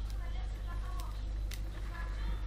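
A thin metal knife blade prying at a tablet's plastic screen edge, with a couple of sharp clicks about a second in, over a steady low hum and faint voices in the background.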